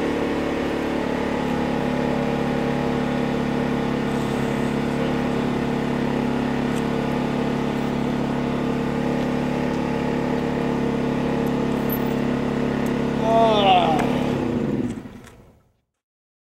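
A vehicle engine idling with a steady, level hum. About thirteen seconds in, a person gives a short falling moan, then the sound fades out.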